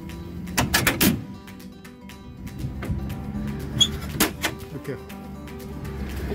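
A metal slide-out tray loaded with plastic storage boxes being pulled out on its runners from a trailer's storage bay, with clunks and rattles about a second in and again near four seconds. Steady background music runs underneath.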